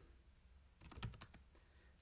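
Faint keystrokes on a computer keyboard: a quick run of a few key clicks about a second in.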